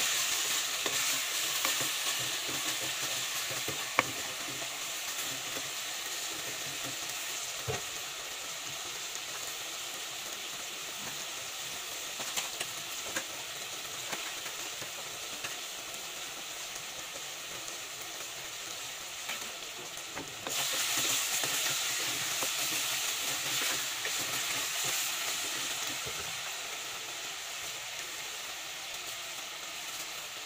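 Pork belly sizzling steadily in a clay pot as its sauce cooks down, with a few sharp clicks and scrapes from a wooden spatula against the pot. The sizzle grows louder about twenty seconds in.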